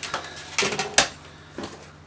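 Handling noise from unpacking a plastic internal aquarium filter: cardboard packaging scraping and the filter knocking as it is lifted out of its box and stood on a wooden worktop, with one sharp knock about a second in.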